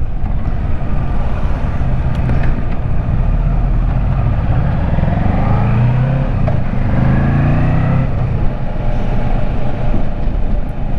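Kawasaki Versys 650 parallel-twin motorcycle engine running while riding, under steady wind noise on the microphone. The engine note rises for a few seconds about halfway through.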